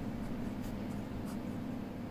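Faint scratching of a ballpoint pen writing on ruled notebook paper, in short separate strokes.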